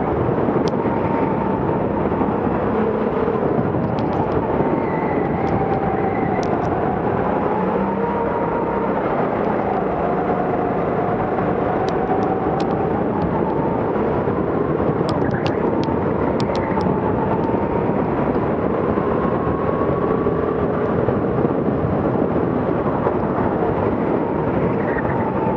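Go-kart motor heard from the driver's seat while lapping a track, its pitch drifting up and down as speed changes through the corners, over steady running noise. Occasional short sharp clicks stand out, in clusters a few seconds in and again past the middle.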